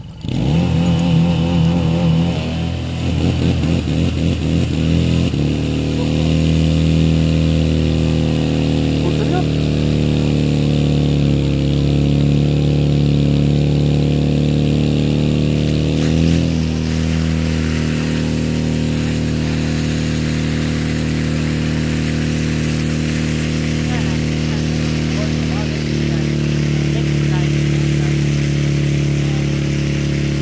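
Portable fire pump engine running hard at high revs. Its pitch wavers for the first few seconds, then holds steady, with small changes in load about halfway through and again near the end as the hose lines deliver water.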